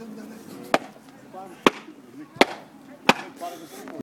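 Four sharp knocks, each a single short crack, a little under a second apart, over low murmuring voices.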